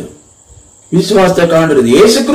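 A man speaking in Malayalam, preaching, picks up again about a second in after a short pause. A faint, high, steady whine can be heard in the pause.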